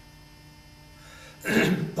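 A man clears his throat once, sharply, about a second and a half in, after a quiet pause filled only by a steady low electrical hum.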